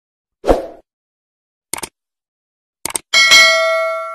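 Subscribe-button animation sound effects: a short thud, two pairs of quick clicks, then a loud bell-like ding that rings on and slowly fades.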